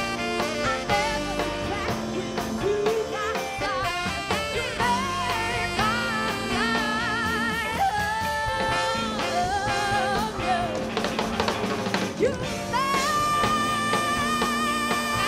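Live band playing a jazzy pop song: drum kit, keyboard and electric guitar under a wavering lead melody line with vibrato.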